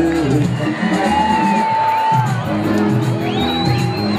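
Music playing with a steady repeating beat, over a large crowd cheering and whooping, with a few long high held calls rising above it.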